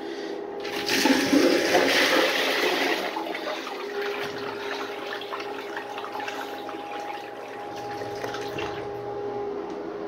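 Homemade miniature wall-hung toilet flushing: water rushes into the bowl about a second in, then swirls and drains, with a steady tone under the draining from about four seconds in. The flush is weak, which the builder puts down to the wall-hung design not making much suction.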